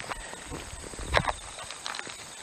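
A few soft knocks and scuffs, the clearest a little after a second in, over a low rumble: sneakers shifting on asphalt.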